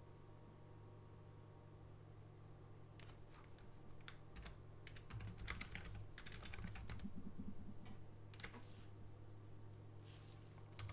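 Computer keyboard typing in short runs of keystrokes, starting about three seconds in and stopping near the end, over a faint steady low hum.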